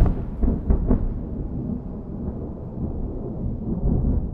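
Deep rumble of thunder, loudest at the start and slowly easing, with a couple of brief crackles about a second in.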